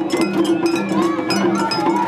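Japanese festival float music (matsuri-bayashi): quick, steady metallic strikes of a small hand gong over drums, with a crowd around.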